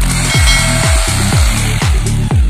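Electric drill boring into the concrete floor with a steady grinding noise that stops just before the end, heard under loud electronic dance music with a beat about twice a second.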